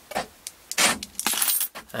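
A bunch of car keys and remote fobs jangling on a keyring as they are handled. There are a few sharp clicks and knocks about a second in, then a longer metallic jangle.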